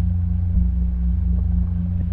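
Electronic music backing: a steady low bass drone with no voice over it.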